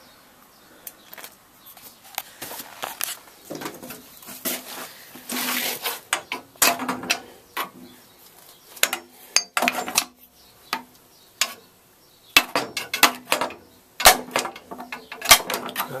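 Metal parts of a refrigeration compressor clinking, tapping and scraping as the valve plate is worked loose from the cylinder block, with a quick run of sharp taps in the last few seconds.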